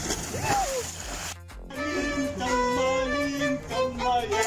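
Water splashing briefly, then after a sudden cut a violin played with the bow in long held notes that step from pitch to pitch.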